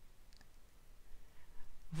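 Quiet room tone with a few faint clicks.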